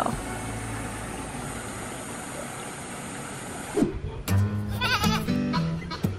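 Steady rushing of water from a small pond waterfall. About four seconds in it cuts off and background music with a steady bass line starts.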